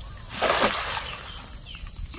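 A nylon cast net splashing down onto the creek's surface about half a second in: one short, hissing splash that fades within about half a second.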